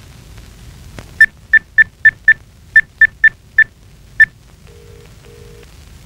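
Cordless phone handset keypad beeping as a number is dialled: ten quick beeps at one pitch. After them comes a low double ring in the earpiece, the ringback tone of the call going through.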